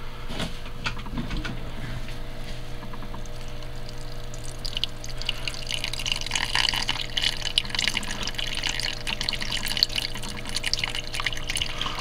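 Small submersible terrarium pump humming steadily as it runs for the first time; about four or five seconds in, water starts trickling and splashing down the waterfall's rock face into the pool below.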